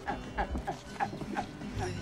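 Film soundtrack from a movie clip: voices mixed with background music.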